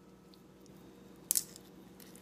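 Fingers pressing garlic into holes poked in the skin of a raw turkey, with one short wet squish about a second in, over a faint steady hum.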